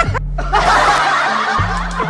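A crowd of people laughing, many voices overlapping, starting about half a second in, over background music with a steady bass line.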